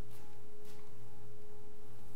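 A steady, unchanging electronic tone, a thin whine with a fainter overtone above it, over a low electrical hum on the audio feed.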